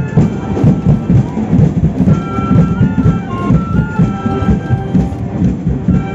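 Parade marching band playing: drums beating fast and heavy at about four beats a second, with held brass notes coming in about two seconds in.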